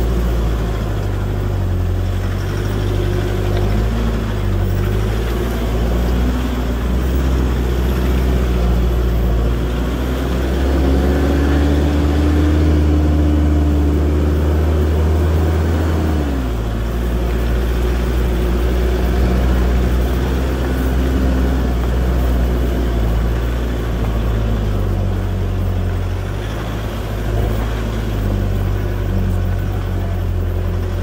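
Toyota Land Cruiser Prado 150 series driving slowly up a rough dirt track: a steady low engine drone under tyre and track noise. The engine note climbs and then drops and changes just past the halfway mark.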